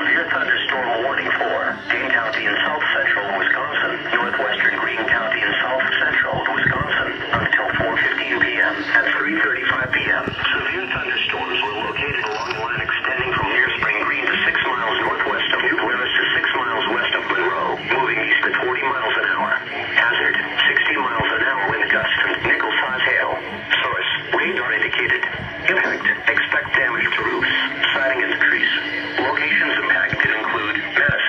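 A voice reading an Emergency Alert System severe thunderstorm warning without a break, in a thin, narrow radio-like sound, played back through a computer's speakers.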